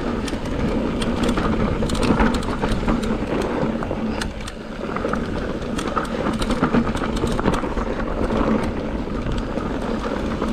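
Electric mountain bike descending a dirt singletrack, heard from a handlebar-mounted camera: a steady rumble of tyres on the trail with frequent clicks and rattles from the bike over bumps, briefly easing about four and a half seconds in.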